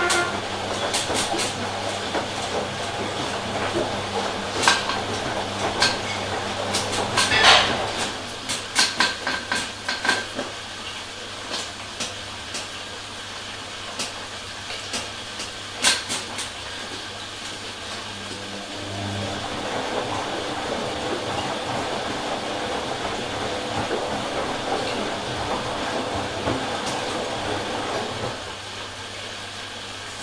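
Bosch Logixx 6 front-loading washing machine tumbling a wet blanket during a rinse: a steady drum-motor hum under the swish of wet laundry and water. Scattered clicks and knocks come most often in the first half, with a loud cluster about seven seconds in.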